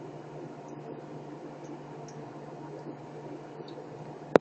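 Steady low hiss with a constant low hum, and a few faint short ticks.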